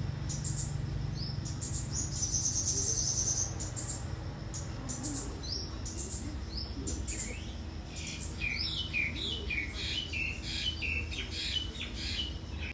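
Small birds chirping, with a fast high trill about two seconds in and a run of short falling chirps in the second half, over a low steady hum.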